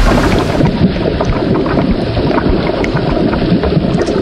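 Red wine poured into a wine glass, splashing and sloshing: a loud, steady rushing with a fizzing crackle through it, swelling at the start.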